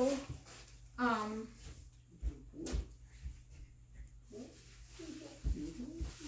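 A short vocal sound about a second in, then scattered soft low knocks and faint murmuring.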